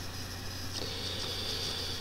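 Quiet room tone: a steady low hum with faint hiss and no other clear event.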